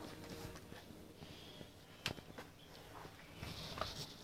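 Faint room noise with a few soft clicks, the sharpest about two seconds in.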